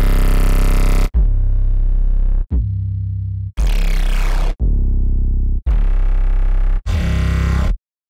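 Custom 808 bass samples made in Serum, auditioned one after another: seven deep bass notes of about a second each, each cut off as the next starts.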